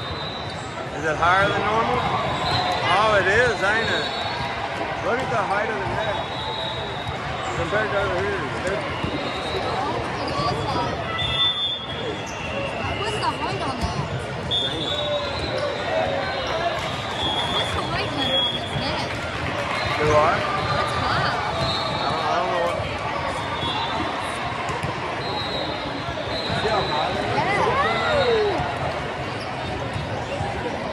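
Volleyball hall ambience: players and spectators calling and shouting over each other, with sneakers squeaking on the sport court and the knocks of volleyballs being hit and bouncing. Both continue throughout.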